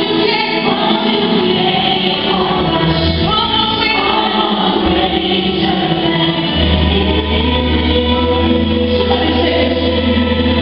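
Gospel music with a choir singing, loud and steady, accompanying a praise dance; a deep bass note is held through the second half.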